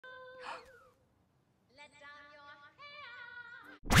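Edited intro audio: faint pitched, voice-like sounds whose pitch bends and wavers, cut off just before the end by a sudden loud, noisy burst.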